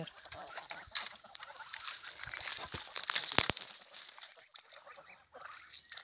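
Young grey domestic geese, goslings, calling at the water's edge, with splashing and scattered sharp clicks, the loudest a few clicks about three and a half seconds in.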